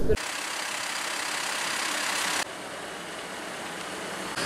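Steady street traffic noise, an even hiss with no single engine standing out; it drops suddenly to a quieter level about two and a half seconds in.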